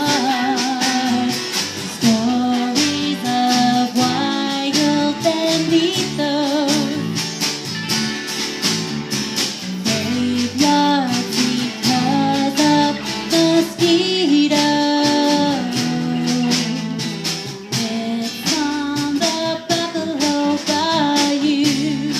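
A small live band plays a song: a woman sings over strummed acoustic guitar, with electric guitar and bass guitar and a steady beat.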